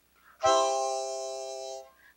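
Harmonica playing one held chord. It comes in sharply about half a second in, fades slightly, and stops shortly before the end.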